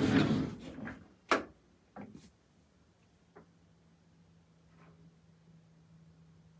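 A door being opened with a brief rush of scraping noise, then a sharp click and a second, smaller click as a light is switched off. After that only a faint, steady low hum is left.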